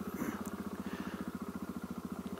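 Single-cylinder engine of a 2013 KTM 690 Enduro R with a Wings titanium exhaust idling at a standstill, a steady even thump of about a dozen beats a second.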